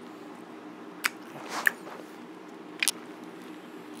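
A person chewing pizza close to the microphone, with three short, sharp, wet mouth smacks: about a second in, around a second and a half, and near three seconds. A steady low hum runs underneath.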